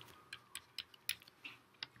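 Stylus tapping on a tablet screen while writing by hand: about six faint, irregular ticks.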